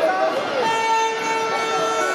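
A horn sounding one long, steady note from about half a second in, over children's shouts.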